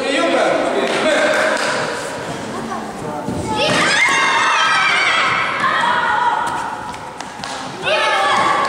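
High-pitched shouting voices echoing in a sports hall during a children's karate bout, with a sharp rising yell about three and a half seconds in as the fighters trade punches, and a few thuds.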